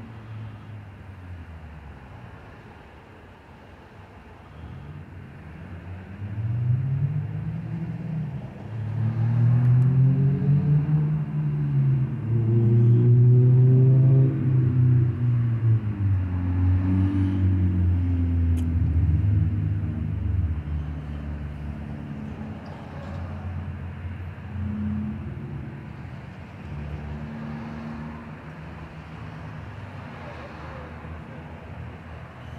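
A motor vehicle's engine passing close by: a low engine hum that builds from about six seconds in, is loudest in the middle with its pitch shifting as it goes past, and fades away after about twenty seconds.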